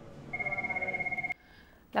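An electronic ringing tone in a hospital room: one fast-warbling ring lasting about a second, which cuts off suddenly.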